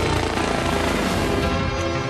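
Television score music with a helicopter's rotor noise mixed into it.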